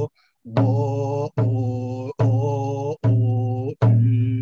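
A man chanting a song to a steady hand-drum beat. The drum is struck about every 0.8 s, five times, and each strike starts a new held note, after a brief pause just after the start.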